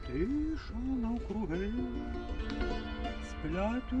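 Tsymbaly, the Ukrainian hammered dulcimer, playing ringing sustained notes while a voice sings a slow melody over it, the singing coming in just after the start.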